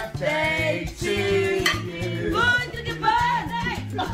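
Background music: a singing voice over a steady, repeating bass line.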